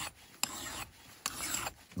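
A mill bastard file drawn by hand across the steel edge of an axe-head hide scraper, sharpening it. Each rasping stroke begins with a sharp click, and two full strokes come a little under a second apart.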